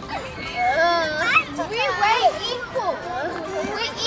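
Young children's voices at play, high-pitched and sliding up and down in pitch, with no clear words.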